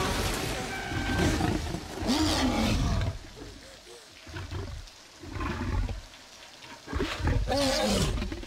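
Film soundtrack of a Tyrannosaurus rex roaring, with voices shouting. The sound is loud at first, drops away in the middle, and flares up again near the end.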